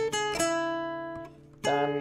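Nylon-string acoustic guitar picked note by note in a short melodic lick. Two notes are plucked at the start and ring out, fading over about a second, then a fresh note is struck near the end.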